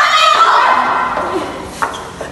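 A woman's high-pitched, drawn-out wail, loudest at the start and tapering off, with a short click near the end.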